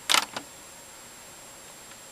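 A short cluster of clicks from buttons being pressed on an Akai MPC sampler, followed by low steady hiss.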